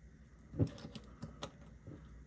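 Small hard-plastic toy parts being handled: a few light, sharp clicks and taps from the plastic pizza discs and the figure's pizza shooter as the discs are pushed in to load them.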